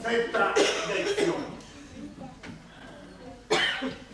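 A person coughing loudly: a harsh fit in the first second and a half, then one sharp cough near the end, with some speech between.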